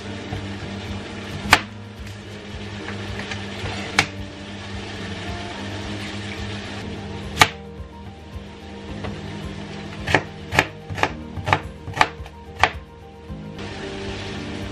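Kitchen knife chopping an onion on a cutting board: a few single knocks spaced a couple of seconds apart, then a quick run of about seven chops near the end.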